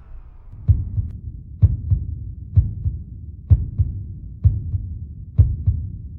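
Heartbeat-like sound effect: low double thumps, a strong beat followed by a softer one, repeating about once a second.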